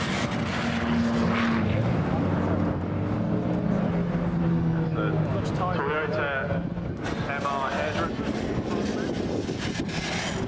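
Volvo 940 estate's engine working hard as the car is thrown around a coned course on loose dirt, its note rising and falling with the throttle over the rasp of tyres on gravel.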